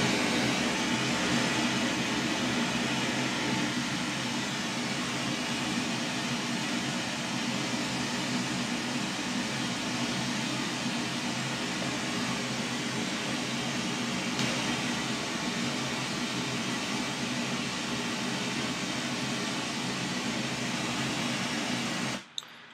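Pink noise test signal played through a studio monitor loudspeaker: a steady, even hiss across the whole range, used as the excitation signal for a transfer-function measurement.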